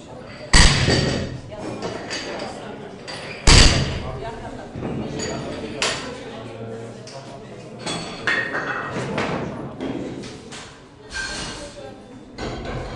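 Barbell being loaded by hand: bumper plates and collars clanking onto the steel bar and platform, with two heavy clanks about half a second and three and a half seconds in, then lighter metallic clinks.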